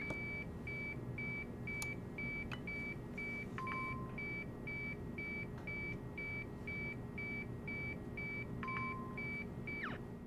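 Neoprobe gamma detection console beeping: a steady train of short, high beeps of one pitch, about three a second, with two longer, lower beeps, one about three and a half seconds in and one near the end.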